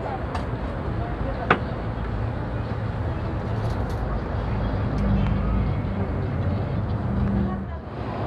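Steady street traffic noise with a low engine hum, faint background voices, and one sharp click about a second and a half in.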